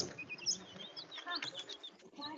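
Tamarins giving a run of quick, high-pitched chirps and short whistles, with a brief lower call about one and a half seconds in.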